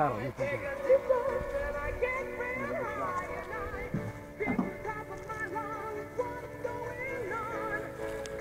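Background music: long held notes with a wavering, vibrato-like melody line over them.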